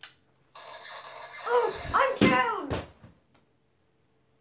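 A boy's wordless vocal sounds: a few short cries that rise and fall in pitch, over a hissing noise that starts about half a second in and stops near three seconds.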